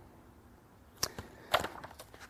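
A quiet pause broken by one sharp click about halfway through, followed by a few faint short sounds.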